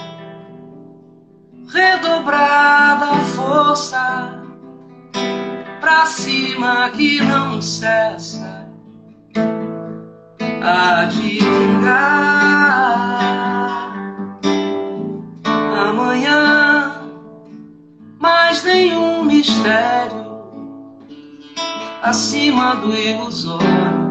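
Acoustic guitar strummed in chord phrases that ring and fade every few seconds, with a woman's singing voice over it.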